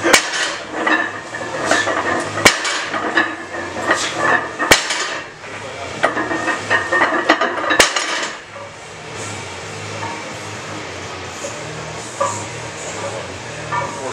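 Plates on a loaded barbell clanking against the floor during deadlift reps: four sharp metallic hits two to three seconds apart, with rattling between them. It settles to a steadier, quieter background after about eight seconds.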